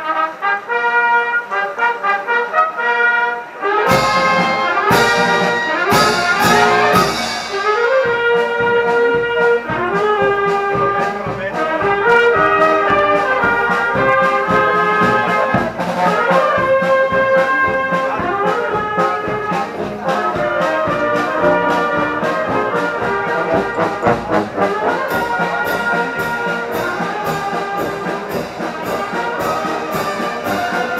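Brass band playing a slow march, trumpets and trombones carrying the tune. Drums and cymbals come in about four seconds in and then keep a steady beat.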